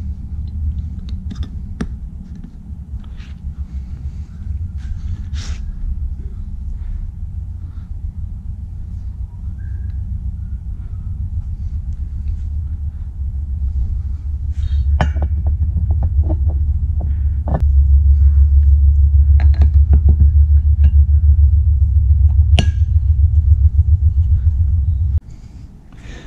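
A steady low machine rumble with a fast pulse, growing louder through the second half and cutting off suddenly about a second before the end. Scattered light clicks and knocks of metal parts being handled sound over it.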